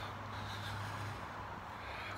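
Faint steady outdoor background noise with a low hum that fades out about a second in.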